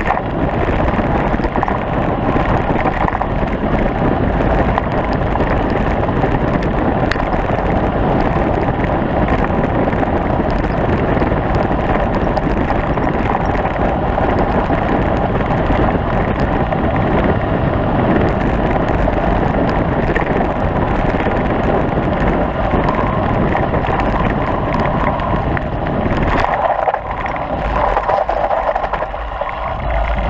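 Steady wind buffeting on a moving camera's microphone, mixed with tyres rumbling and rattling over a gravel track during a fast descent. The low rumble drops away about four seconds before the end.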